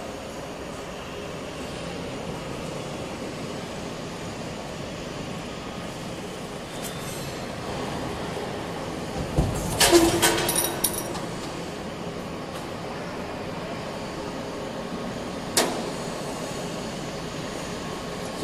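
Steady drone of a square-pipe roll forming line running, with a loud burst of metal clanking about ten seconds in as the punching unit's die strikes, and one sharp click a few seconds before the end.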